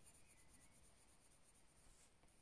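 Near silence, with the faint scratch of a watercolour pencil scribbling colour onto card.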